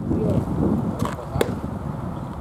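Two sharp knocks of a baseball striking, the second and louder one about a second and a half in, over a low murmur of voices.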